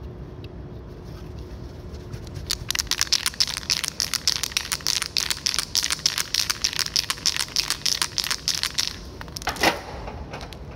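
Aerosol spray paint can being shaken, its mixing ball rattling rapidly for about six seconds after a quiet start. Near the end a short hiss, typical of a brief test spray from the can.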